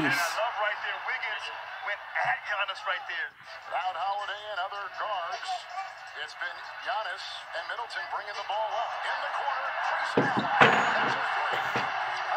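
Televised NBA game audio: arena crowd noise under a play-by-play commentator's voice, the crowd growing louder near the end.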